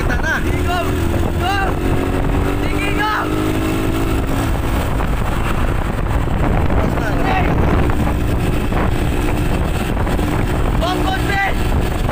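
Engine of a moving motor vehicle running steadily, with a strong low wind rumble on the microphone. Short shouted calls rise over it in the first few seconds and again near the end.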